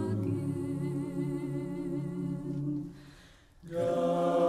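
Unaccompanied voices singing long held notes in harmony, with vibrato. They fade almost away about three seconds in, then a new chord starts just before the end.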